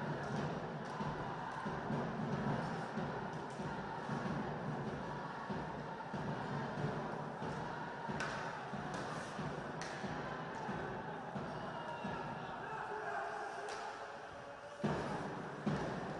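Ice hockey on-ice sound: sticks and puck clacking and skates on the ice over a steady arena murmur, with a few sharp knocks from players and the puck against the boards, the loudest near the end.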